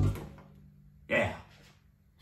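The final chord of an electronic keyboard's one-man-band accompaniment cuts off and fades away within about half a second. About a second in, a man speaks briefly.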